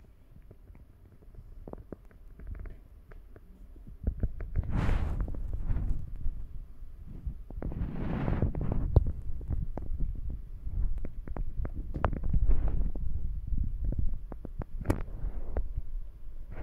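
Handling noise on a handheld phone's microphone: low rumbling with irregular small knocks and clicks, growing louder about four seconds in as the phone is moved, with two brief rushing swells a few seconds apart.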